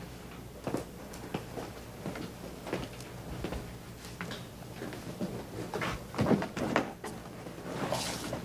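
Scattered footsteps and light knocks of suitcases being handled, with a denser run of knocks about six seconds in, over a steady low hum.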